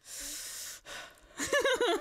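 A sharp breath in, a gasp lasting under a second, then laughter starting about a second and a half in.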